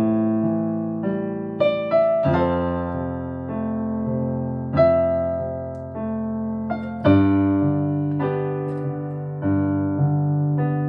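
Solo keyboard with a piano sound playing slow, sustained chords, a new chord struck every second or two and left to ring and fade.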